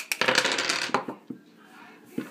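Dice rattling in a dice cup and clattering onto a wooden tabletop: a quick run of sharp clicks that dies away after about a second.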